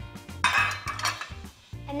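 Metal serving tongs and a ceramic serving plate set down on a stone countertop: a clatter about half a second in, lasting about half a second, with background music underneath.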